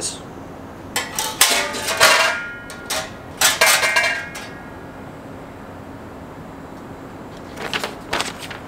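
Loose steel parts of a Weber Jumbo Joe kettle grill clinking and rattling against its enamelled steel lid as the lid vent damper and handle are fitted: a string of sharp metallic clinks with brief ringing, from about one to four and a half seconds in, then quiet.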